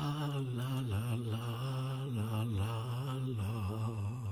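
Voices singing a slow, wordless "la la la" melody over a steady held low note, from a musical theatre cast recording.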